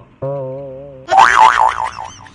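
Comic boing-type sound effect: a low wobbling tone lasting under a second, then a louder high whistle-like tone sliding rapidly up and down, about six swings a second.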